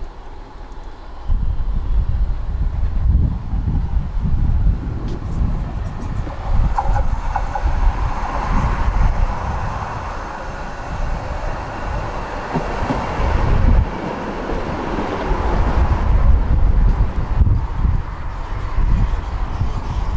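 A tram approaching along the track and pulling in at the platform, the sound of its wheels and running gear swelling through the middle, with a brief high squeal about two-thirds of the way in. Gusty wind rumbles on the microphone throughout.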